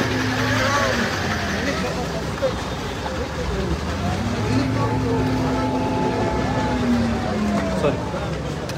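A vehicle engine idling steadily under the overlapping chatter of a crowd of people.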